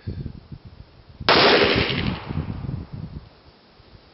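A single shot from an FN Five-seveN pistol firing a 5.7x28mm round: one sharp, loud crack about a second in that dies away over about a second.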